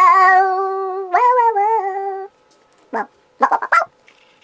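A man's voice singing two long held notes, the second a little higher at its start, then breaking off into a few short, sharp vocal yelps.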